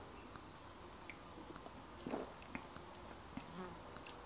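Sips being taken from a small plastic bottle: faint swallowing, with a few small clicks and a soft gulp about two seconds in, over a steady, faint, high-pitched drone.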